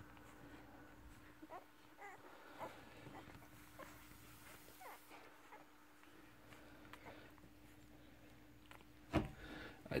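Faint, scattered high squeaks and whimpers from newborn working kelpie pups suckling at their mother. A sharp thump comes shortly before the end.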